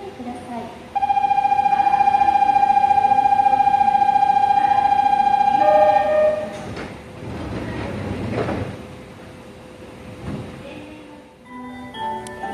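Station platform departure bell: a loud, steady electronic ringing tone with a fast trill, lasting about five seconds and ending in a short lower note. A subway train then pulls out of the platform with a rumble that fades.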